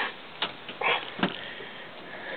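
Two sharp clicks from the EZ Go golf cart's key switch and dash horn button, with a brief breathy noise between them. No train horn sounds: with the key off, the train horns are dead.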